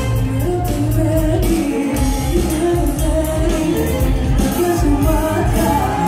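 A woman singing live into a microphone over an amplified Greek band with bouzouki and keyboard, driven by a steady beat.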